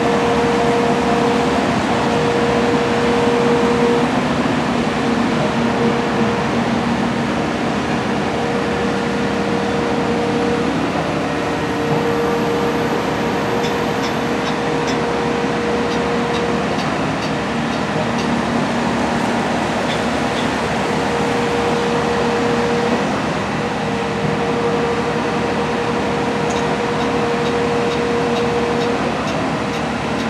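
Steady running of a mobile crane's diesel engine, with a steady hum that comes and goes every few seconds over it.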